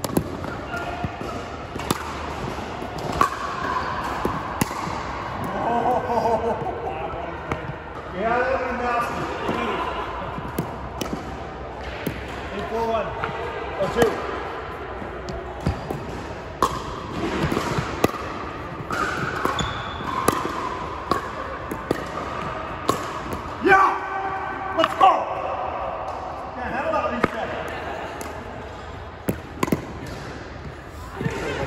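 Pickleball rally: a plastic pickleball popping off hard paddles and bouncing on a hardwood court, sharp hits at irregular intervals, echoing in a large hall, with players' voices in between.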